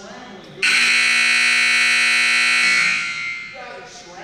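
Gym scoreboard horn giving one loud, steady buzz for about two seconds, starting just over half a second in, then fading out.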